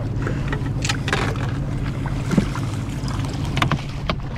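A boat's motor running steadily with a low hum. There are a few short knocks or splashes over it, the last ones near the end as a hooked king salmon thrashes at the surface beside the landing net.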